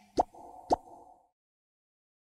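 The last two percussive pops of the music soundtrack, about half a second apart, over a faint held tone. The music then stops just past a second in, leaving silence.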